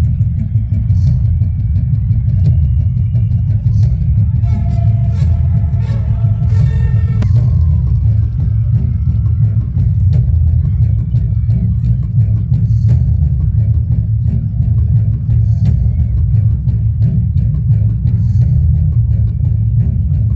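A loud, steady deep rumble runs throughout, with the voices of a crowd of onlookers talking faintly over it.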